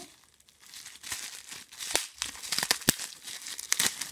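Plastic bubble wrap and shredded cellophane box filler crinkling as a wrapped item is pulled out of a box by hand. Quiet for the first moment, then steady crinkling with sharp crackles from about a second in, loudest near the end.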